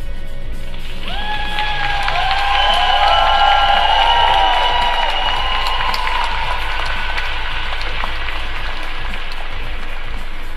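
Audience applauding while music plays. Several held tones come in about a second in and fade away by about seven seconds, when the sound is loudest.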